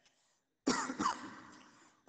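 A person clearing their throat after a brief near-silent pause: a sudden start about two-thirds of a second in, a second push just after, then a fade over about a second.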